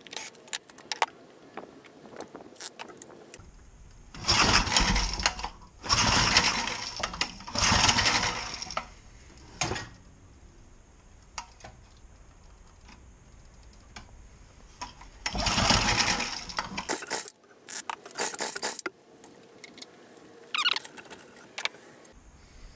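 Briggs & Stratton horizontal-shaft engine cranked by its pull-rope recoil starter, four pulls of about a second each, without catching. Near the end come several short high hisses of carburetor cleaner being sprayed into it.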